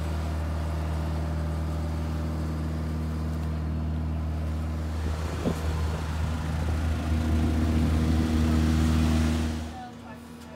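Steady low engine drone on an airport apron at night, swelling louder over the last few seconds and then stopping suddenly near the end.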